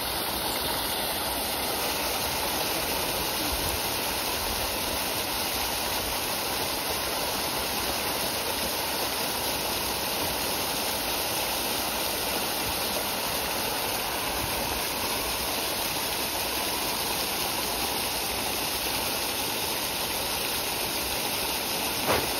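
Steady rushing and splashing water: a dense shoal of fish thrashing at the pond surface while feeding, together with a jet of water gushing into the pond.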